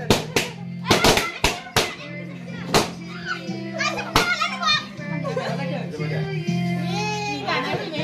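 A run of sharp hand claps in the first three seconds over background music, then voices, including a child's, chattering and singing.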